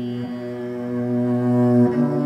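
Cello bowed in long, sustained low notes, with a brief note change shortly after the start and a move to a higher note near the end as the sound swells.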